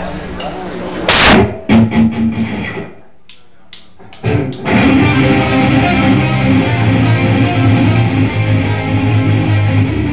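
A live rock band starting a song: a loud crash about a second in and a few scattered hits, a brief lull, then the full band of electric guitar, bass and drums comes in about five seconds in, with cymbals struck on a steady beat a little under twice a second.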